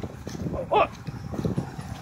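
A single short animal call, pitched and over in a fraction of a second, about three-quarters of a second in, over a steady low rumble of handling and walking noise.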